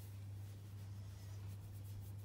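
Faint scratchy rustling of a hand stroking a tabby cat's fur, over a steady low hum.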